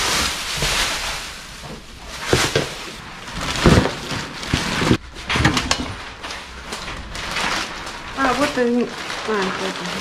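Rummaging through junk: crinkly rustling of plastic bags and cloth, with a few sharp knocks as items are handled. A low voice comes in near the end.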